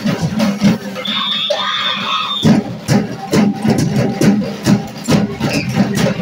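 School drumline of snare and bass drums playing a fast cadence. About a second in the drumming stops for about a second and a half while a single high-pitched note is held, then the drums come back in.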